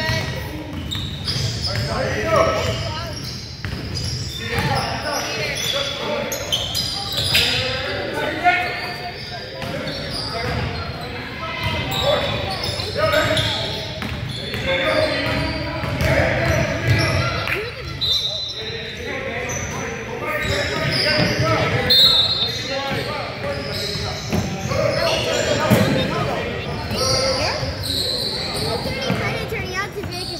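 Basketball game in a large gym: a basketball bouncing on the hardwood court with repeated sharp strikes, players' footsteps and indistinct voices, all echoing in the hall.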